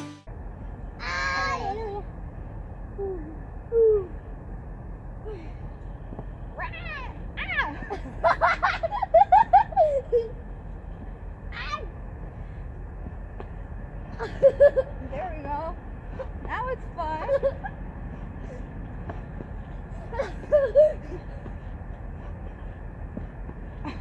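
A child's and a woman's voices in short wordless calls and laughs, coming five or six times, over steady outdoor background noise.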